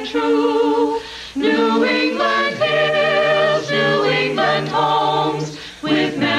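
Small group of carolers, men and women, singing a Christmas carol in harmony a cappella. A low bass line holds a long note through the middle, with a short breath between phrases about a second in.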